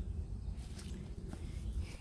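Faint rustling footsteps on pine-straw mulch, about three soft steps, over a low steady rumble.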